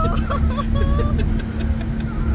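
Steady low road-and-engine rumble with a constant hum, heard from inside a moving car's cabin. Voices and laughter sound over it in the first second or so.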